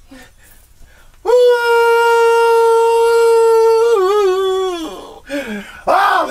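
A man singing along, holding one long high note for almost three seconds, then letting it waver and slide down before it breaks off, with a few short sung sounds just after.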